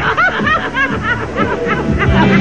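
A person laughing in a quick run of ha-ha bursts, about five a second, over upbeat party music; the laughter dies away after about a second and a half while the music carries on.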